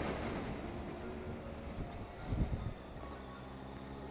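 Kawasaki ZZR1400 motorcycle engine running low at slow riding speed and idle, a steady low hum, with a brief thump a little past halfway.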